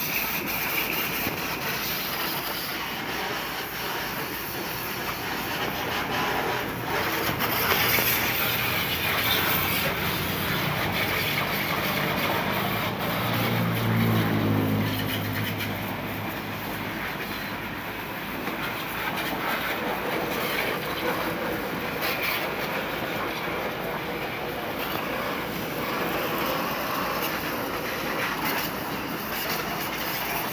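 High-pressure washer spraying water onto a motorcycle, a steady loud rush of spray on metal and wet concrete. Around the middle, a low engine hum swells, shifts in pitch and fades.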